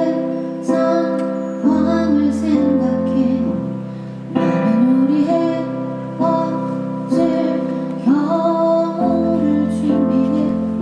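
A woman singing a slow song live into a microphone over sustained instrumental accompaniment, its chords changing about every two seconds.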